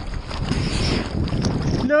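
Seawater sloshing and splashing around a surfboard being paddled through small waves, with a low wind rumble on an action camera's microphone; a man's voice cuts in near the end.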